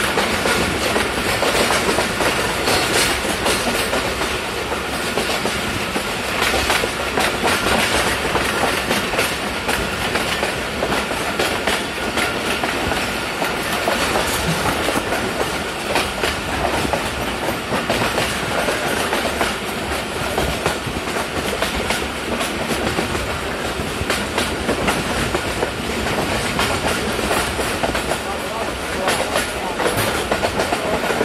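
Moving train heard from inside a carriage: a steady rumble of wheels on the track with a running clickety-clack of clicks over the rail joints.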